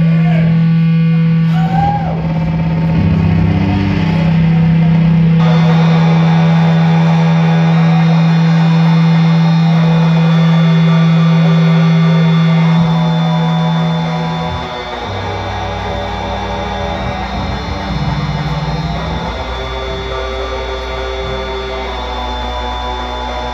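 Live rock band playing electric guitar and keyboard, with a loud held low note under steady sustained tones. About two-thirds of the way through, the low note changes pitch and the music gets slightly quieter.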